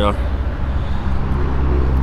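Harley-Davidson Fat Boy's 128-cubic-inch Milwaukee-Eight V-twin idling steadily, a low even rumble through its aftermarket exhaust.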